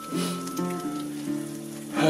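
Eggs sizzling in a frying pan, a steady hiss, under background music with held low notes.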